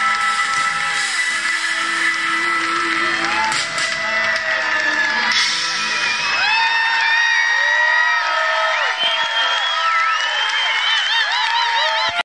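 Live band playing in a concert hall with a cheering, whooping crowd. About seven seconds in the low end drops away, leaving high sliding, wavering tones over the crowd noise.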